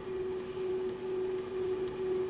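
Steady background hum, one even tone with a fainter lower one beneath, over a light hiss: the running noise of the recording, heard in a pause between spoken phrases.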